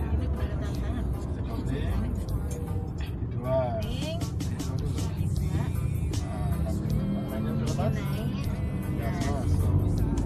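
Steady engine and road rumble inside the cabin of a Daihatsu Xenia driving along a straight road, with music playing faintly and a brief voice about three and a half seconds in.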